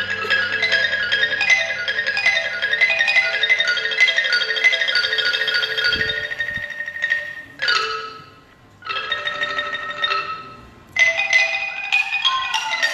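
Isan pong lang ensemble playing live, led by rapid notes on the pong lang wooden log xylophone. In the second half the music goes in short stop-start phrases, breaking off and coming back in three times.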